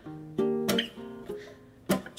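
Small-bodied acoustic guitar fingerpicked: a few plucked notes ring out and fade one after another, then a louder strum near the end.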